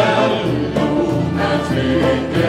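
Mixed choir of women and men singing an Arabic song, with orchestral accompaniment that includes clarinet and brass.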